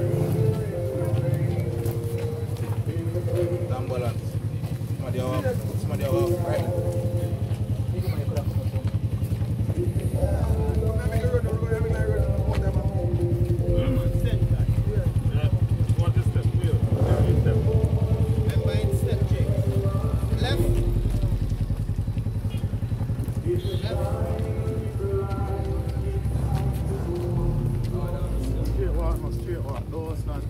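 Slow singing voices with long held notes, over a low steady engine rumble.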